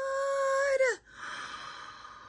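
A woman's high-pitched, drawn-out "ooh" of delight, held steady for about a second and dropping off at the end, followed by a fainter breathy exhale.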